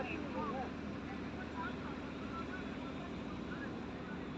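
Faint, distant voices of cricket players calling out over a steady low background hum; no bat-on-ball strike.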